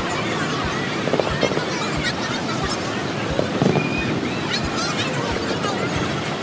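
Steady roar of the falling water at Niagara Falls, with a crowd of onlookers chattering and calling out over it and dull low thumps about every two-thirds of a second.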